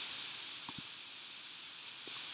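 Steady background hiss of the recording in a pause between speech, with two faint short ticks a little under a second in.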